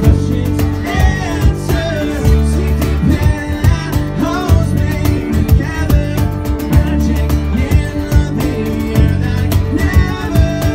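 A live band playing a song: a man singing lead over strummed acoustic guitar, a cajon beat and keyboard.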